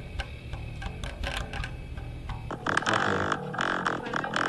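Electric bass guitar played through an amp-simulator app on a phone, with plucked notes. About two and a half seconds in, the sound gets louder and fuller.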